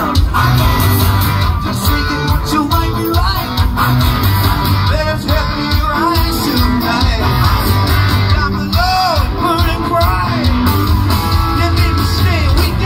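Live rock band playing loud, heard from within the audience: electric guitars, bass, drums and keyboards, with gliding lead lines over a steady beat.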